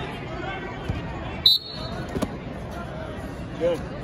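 Referee's whistle, one short, sharp blast about a second and a half in, restarting a wrestling match from the neutral position, over the chatter of a crowded hall.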